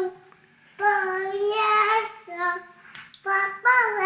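A high solo voice singing unaccompanied, holding long notes in short phrases with brief pauses between them.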